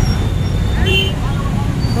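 Steady low rumble of road traffic, with a brief snatch of a nearby voice about a second in.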